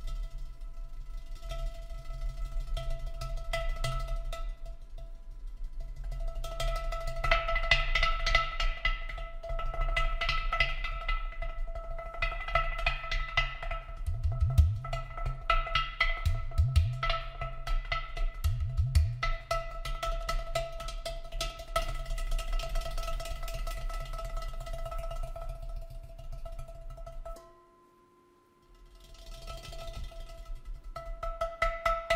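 Large vessel drum played with the hands: quick taps and slaps in a dense rhythm, with a few short groups of deep bass notes in the middle, over a steady held drone. The music drops out almost completely about 27 seconds in, then the drumming picks up again.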